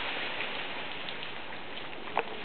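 Freezing rain falling steadily on ice-coated trees and ground: an even hiss with a few faint ticks of drops.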